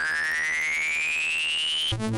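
Electronic transition sting: a synthesized tone sweeps steadily upward in pitch over a fast pulsing low beat, then cuts off suddenly near the end.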